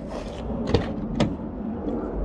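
Sliding side door of a Dodge Caravan cargo van being unlatched and pulled open by hand: two sharp clicks a little under half a second apart, about a second in, over rumbling handling noise.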